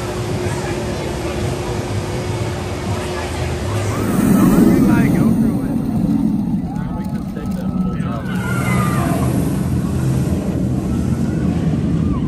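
A Bolliger & Mabillard giga roller coaster train running along its steel track, a steady rumble that swells loudest about four seconds in as the train passes close, with people's voices over it.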